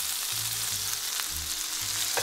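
Blackened steaks frying in a hot cast-iron skillet, a steady sizzle of fat and juices in the pan.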